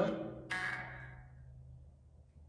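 Necrophonic ghost-box app playing through a phone speaker: two short bursts of garbled sound about half a second apart, each trailing off in a long echo over about a second.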